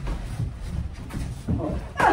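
Light kickboxing sparring: a few dull thumps of gloved punches and kicks landing on padded body protectors and feet moving on the gym mat, with short vocal exhales in the second half.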